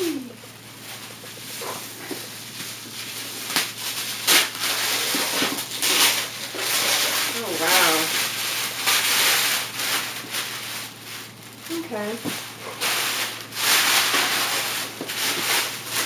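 Paper and cardboard packaging rustling and crinkling in irregular spurts as a shipping box is unwrapped by hand, with a couple of short wordless vocal sounds in between.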